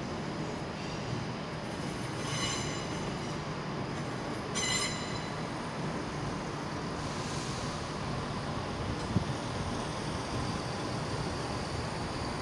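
CrossCountry Class 170 Turbostar diesel multiple unit running slowly into a platform, with a steady low rumble. Two brief high squeals come about two and four and a half seconds in, a fainter one follows, and a single sharp knock sounds about nine seconds in.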